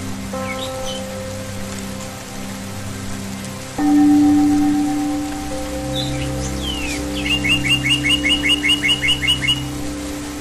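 Slow ambient synth music of held chords, a louder chord coming in about four seconds in, over a steady hiss of water. Songbirds call now and then, and near the end one sings a fast trill of about a dozen repeated chirps.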